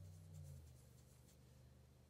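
Near silence: faint soft rubbing of a finger swatching powder eyeshadow onto the back of the hand, over a low room hum.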